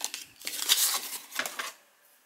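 Stiff paper cards, small pocket calendars and business cards, rustling and sliding against each other as they are handled and set down, in two short spells.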